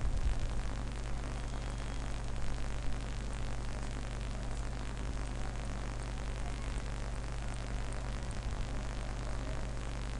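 Steady low electrical hum with an even hiss of noise over it, with no distinct events.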